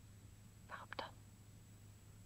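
A brief whisper from a voice about a second in, with a small click. Behind it runs the faint steady hum of an old recording.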